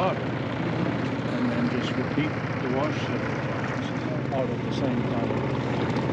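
Kuppet portable washing machine running its spin cycle: a steady, pretty quiet motor hum with a drum whir.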